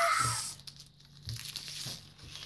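Foil Pokémon booster pack wrapper crinkling and tearing as it is pulled open by hand, the rustling picking up about halfway through.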